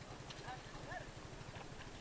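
Faint voices calling out twice, over a low, uneven knocking rumble.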